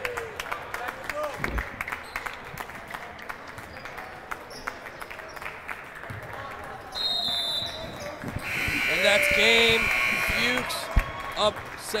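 Basketball bounces and sneaker squeaks on a hardwood gym floor. About seven seconds in there is a short, high whistle, then the gym's game-ending buzzer sounds loudly for about two seconds as the clock runs out.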